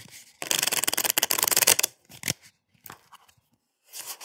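A deck of playing cards being riffle-shuffled: a fast flutter of cards lasting about a second and a half, then a short burst of card noise and a couple of faint ticks.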